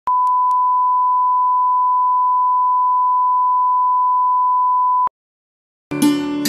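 Steady 1 kHz line-up test tone, a single pure beep lasting about five seconds, that cuts off suddenly. After a moment of silence, plucked-string music begins near the end.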